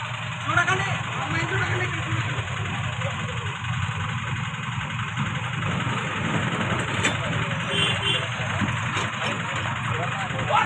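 A bus engine idling steadily, with people talking in the background.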